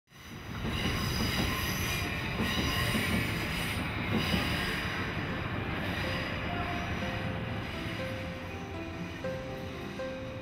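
Train passing over a railway bridge, its wheels squealing on the rails with a high, thin whine. The rail noise eases over the second half as music with a line of single held notes fades in, from about six seconds.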